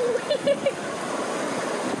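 Steady wash of sea surf breaking on rocks, with a few short voice sounds near the start.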